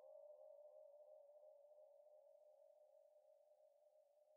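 Faint sustained electronic synth tone held on one pitch, with a slight repeating wobble, fading out steadily.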